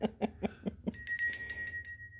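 Laughter, then about a second in a small glazed ceramic hand bell rings with a quick run of clapper strikes and a clear, high, steady ring; its loose clapper has just been put back in.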